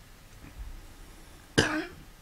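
A quiet pause, then a single short cough near the end.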